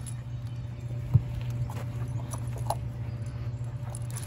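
Slowed-down slow-motion sound of a dog moving about on grass: scattered soft knocks over a steady low hum, with one sharp thump about a second in.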